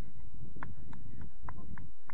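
A run of about six sharp, evenly spaced claps, about three a second.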